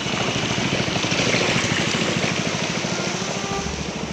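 Small boat's motor running steadily with a rapid, even putter, over the rush of water.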